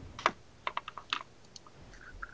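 Typing on a computer keyboard: a handful of quick, light key clicks in short runs.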